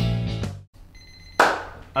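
Background music stops about half a second in. A timer alarm then sounds, a high steady tone and then a louder ring near the end, signalling that the set time is up.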